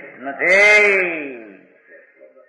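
A man's drawn-out exclamation, "aahaahaa", beginning about half a second in: a breathy rasp, then a held voice that rises and falls in pitch and fades out.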